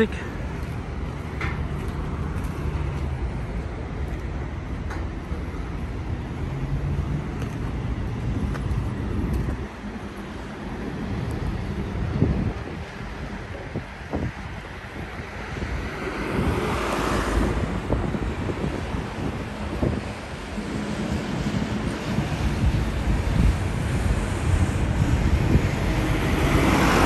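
Steady outdoor rumble of road traffic and construction-site machinery, with wind buffeting the phone's microphone. The noise swells twice, about two-thirds of the way in and again near the end, as heavier vehicles pass.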